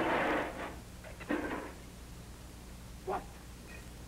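A crash of breaking crockery and clattering metal trays dies away in the first moments. A second, smaller clatter comes about a second in, and a short vocal cry near the end.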